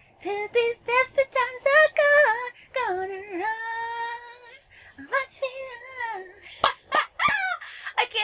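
A woman's high voice singing wordlessly in short, sliding phrases, with one long held note in the middle. Two sharp clicks near the end.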